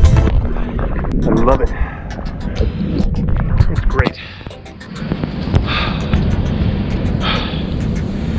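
Pool water sloshing and lapping against a camera held at the waterline, a heavy low rumble, with music and brief voice sounds underneath.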